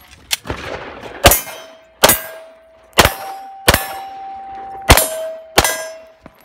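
A string of about six handgun shots, roughly one a second. Steel targets clang on hits, each ring holding a clear tone for a second or so after the shot.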